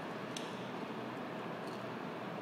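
Steady background hiss with two faint clicks, the quiet sound of a filleting knife working along a snapper's rib bones.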